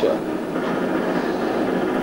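Steady murmur of indistinct background voices and room noise, with no one speaking up close.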